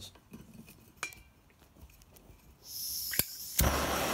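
Propane hand torch being lit with a lighter: a small metallic click about a second in, then a high hiss of gas from the opened torch valve, a sharp click of the lighter, and the torch catching near the end and burning with a loud steady rushing noise.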